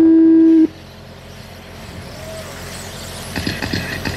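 Race start tone: one loud, steady electronic beep lasting just over half a second. It is followed by the quieter, slowly rising high whine of the electric RC sprint cars getting away from the start.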